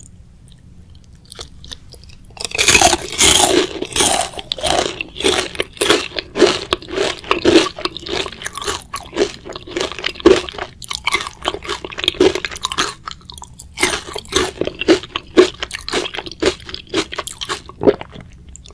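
Close-miked crunching bites and chewing of crispy, batter-coated Korean fried chicken, the crust crackling in rapid, dense crunches. They start about two and a half seconds in, with a short pause about three quarters of the way through.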